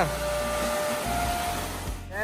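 Water rushing down a small rocky cascade in a forest stream: a steady, even hiss of falling water.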